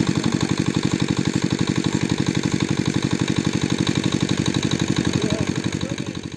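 Small pump engine running steadily with a fast, even chugging beat.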